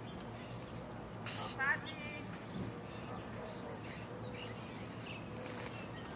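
A bird calling: a short, high call repeated about once a second, with a brief run of quick chirps about a second and a half in.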